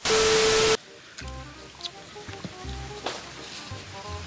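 A burst of TV static with a steady beep, under a second long, used as a glitch transition effect, followed by soft background music.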